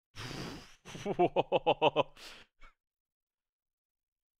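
A man laughing. A short breathy rush of air comes first, then a run of about six quick pitched 'ha' pulses over about a second, ending in a breath out.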